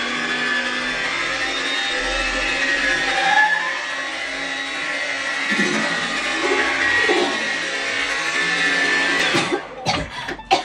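Handheld hair dryer running steadily, its nozzle blowing out a cloud of baby powder, with background music under it; the dryer stops near the end.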